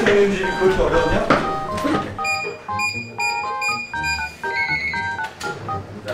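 Someone hums a wordless 'la-la-la-lan' tune. From about two seconds in, a digital door lock's keypad sounds a run of about ten short electronic beeps at stepped pitches as the entry code is punched in.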